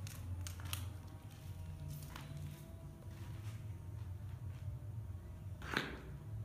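Footsteps on a rubble-strewn floor: a few scattered crunches and scuffs, with one sharper, louder crunch near the end, over a steady low hum.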